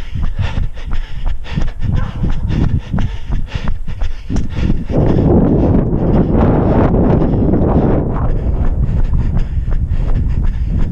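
Running footsteps on asphalt at a fast cadence, about three footfalls a second, during a speed interval. About halfway through, a steady rushing wind noise on the microphone comes up and largely covers the steps.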